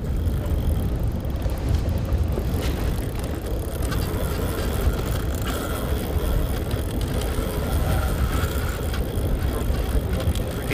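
Steady low rumble of wind and boat noise on open water, with a faint thin whine for a few seconds in the middle.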